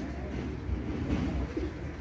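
Low, uneven rumble of a handheld microphone being handled as it is passed from one person to another.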